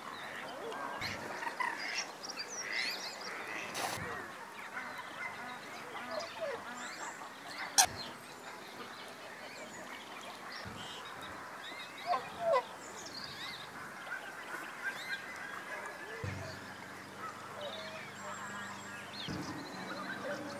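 Wildfowl calling: many short duck and goose calls overlapping throughout, with a pair of louder calls about twelve seconds in. A sharp click about eight seconds in is the loudest sound.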